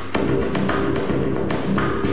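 Live improvised electronic downtempo music: a steady beat of crisp clicking percussion over sustained synth tones, with a brief drop in level right at the start.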